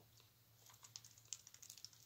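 Ducklings paddling and dabbling in a tub of water: faint, quick little clicks and light splashes, starting about half a second in.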